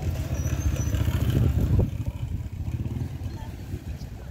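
TVS motorcycle's engine running with a low rumble as the bike rides along. It is loudest in the first two seconds and eases off after that, as the bike slows.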